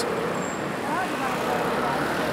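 Steady city road traffic noise from passing vehicles, with faint voices of passers-by briefly audible about a second in.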